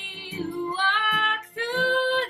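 A woman singing a slow ballad to acoustic guitar and violin, holding two long notes with a short break between them.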